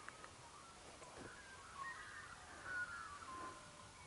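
Faint bird song: a warbling run of whistled notes that glide up and down, lasting about two and a half seconds and loudest past the middle.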